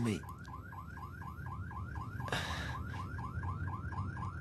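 Electronic alarm warbling: a short rising chirp repeated rapidly, about five times a second, over a low rumble. A brief hiss comes about two and a half seconds in.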